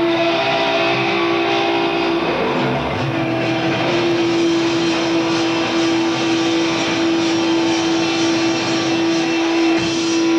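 Live rock band with a dense, noisy electric guitar wash; one steady note is held unbroken through the second half.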